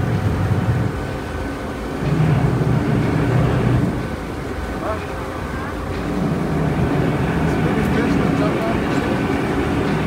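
Engine of a river shuttle boat running steadily under way, its low drone swelling and easing a few times, with water rushing past the hull.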